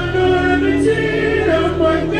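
Live stage-show music through the PA: sung vocals holding long notes over a steady bass line.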